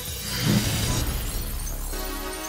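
Glass-shattering sound effect about half a second in, its bright crackle of shards dying away within the next half-second, over a music sting.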